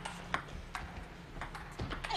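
Table tennis ball striking the paddles and the table during a doubles rally: a string of sharp ticks a few tenths of a second apart.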